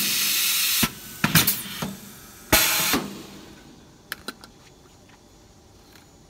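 Compressed air hissing out of a pneumatic bag-on-valve aerosol filling machine in two bursts, a longer one at the start and a shorter one about two and a half seconds in, with sharp metallic clicks of the machine heads and cans between them.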